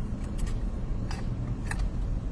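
Crisp pretzels being chewed, a few short, sharp crunches spread through the two seconds, over the steady low road noise inside a moving car's cabin.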